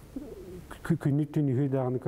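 A man's voice speaking after a short pause, starting with a low hum-like vocal sound.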